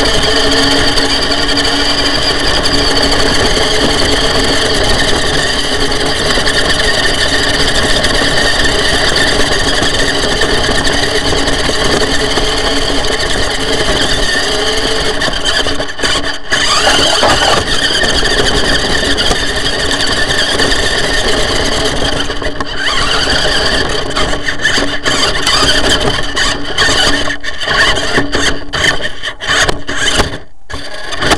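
Small RC crawler's electric motor and gearbox whining steadily under drive, picked up close through the chassis. It drops out briefly about halfway, and over the last few seconds it stops and starts repeatedly as the throttle goes on and off.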